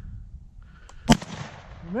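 A single shotgun shot about a second in, sharp and loud, with a fading echo after it: a shot that misses the bird.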